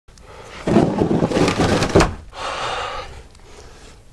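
Scuffling and scraping of a person moving close to the microphone on a dirt floor, ending in a sharp knock about two seconds in. A softer hissing noise follows.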